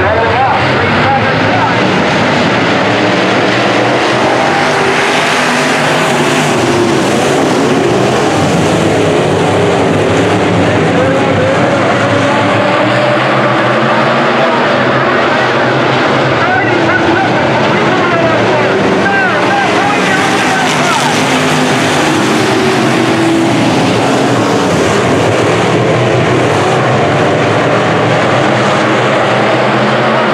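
A pack of IMCA sport modified dirt-track race cars running at speed, their V8 engines loud and continuous, pitch rising and falling as the cars accelerate and pass.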